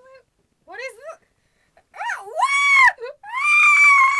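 A high-pitched voice gives a few short rising and falling squeaks, then two long, loud screams from about two seconds in.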